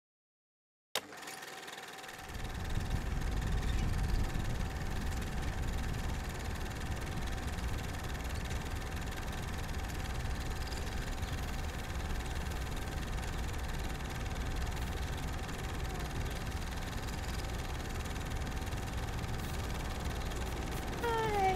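A click about a second in, then a steady low engine-like rumble with a constant hum, running unchanged.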